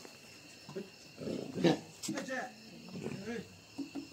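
Indistinct voices talking briefly, over a steady high chirring of night insects.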